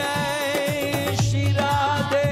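Devotional kirtan music: a voice singing a wavering chant melody over a held tone, with regular drum strokes and cymbal-like clicks.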